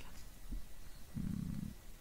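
A man's brief, quiet, low closed-mouth hum ("mm"), lasting about half a second and starting just after a second in.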